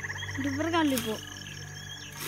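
A person's voice rises and falls in pitch about half a second in, over a fast, steady high trill and a low hum. A single sharp knock comes about a second in, as from the hoe striking the ground.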